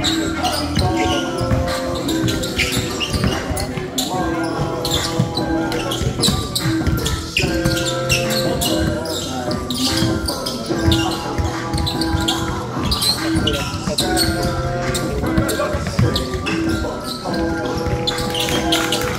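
Basketball being dribbled and bounced on an indoor court, a run of short sharp knocks, over music with a repeating pattern of held notes that plays throughout.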